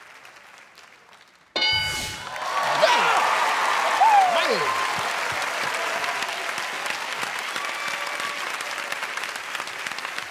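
A brief hush, then a game-show answer-board chime about a second and a half in, marking the answer as found on the board. Studio audience applause and cheering, with shouts and whoops, follow and carry on.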